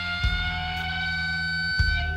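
Live rock music: a long sustained electric guitar note with a slow upward bend held over low bass guitar notes, which change about a quarter second in and again near the end.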